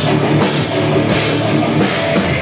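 Heavy metal band playing loud and live: distorted electric guitar over a drum kit with cymbals.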